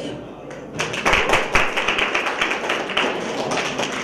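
Audience clapping in a hall, starting about a second in: a dense run of hand claps.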